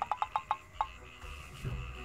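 A person's high-pitched giggle: a quick run of short laughs that slows and fades out within the first second, over faint background music.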